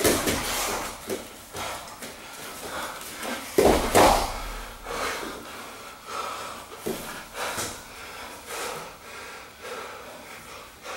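Grapplers breathing hard in repeated short breaths while scrambling, with a loud thud about three and a half seconds in as their bodies drop onto the padded mat.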